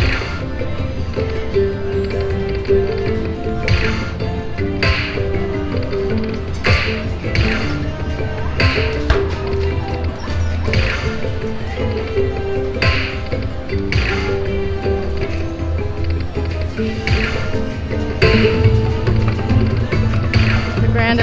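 Slot machine's hold-and-spin bonus music looping steadily, with a sharp hit every second or two as reels stop and new fireball symbols land and lock.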